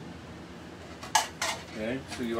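Two sharp clinks of kitchenware being handled on the counter, just over a second in, followed by a brief voice near the end.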